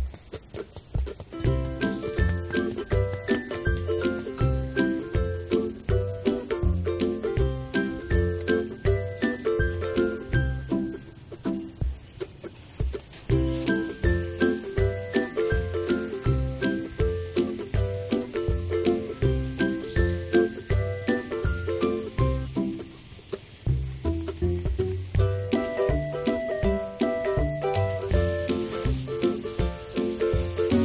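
Background music with a regular low beat and a repeating melody, over a continuous high-pitched insect chirring, like crickets.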